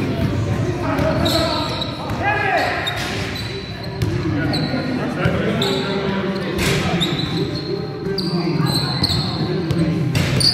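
Basketball game on a sports-hall floor: a basketball bouncing, sneakers squeaking in short high chirps again and again, and players calling out, all ringing in the hall. A loud knock comes about two-thirds of the way in.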